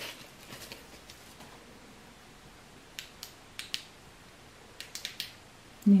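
Small black flashlight from a survival kit being handled, giving a few sharp plastic clicks: a pair about three seconds in and a quick cluster near five seconds in. It has no batteries in it.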